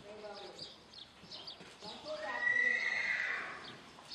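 A horse whinnying once, a loud call of about a second and a half starting about halfway in, rising slightly and then falling away. It sounds over the hoofbeats of a horse trotting on arena footing.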